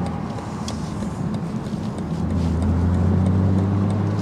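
Turbocharged inline-six of a 2024 BMW Z4 M40i driving under throttle, heard from the open cockpit with road and wind noise. Its low note is unsettled for the first couple of seconds, then holds steady at a lower pitch and grows slightly louder.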